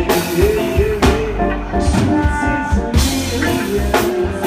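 Reggae band playing live: drum kit and electric guitar over a heavy low bass line, with keyboards and hand drums on stage.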